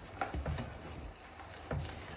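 An over-100-year-old Alexanderwerk hand-cranked cast meat grinder being turned as it minces raw vegetables, giving a few irregular clicks and soft knocks from the mechanism.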